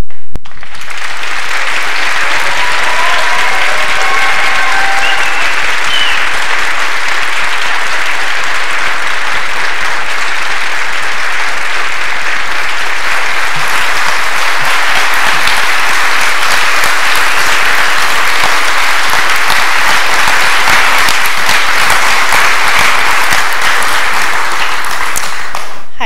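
Audience applauding steadily, starting abruptly as the piano music ends, with a faint call or two from the crowd a few seconds in.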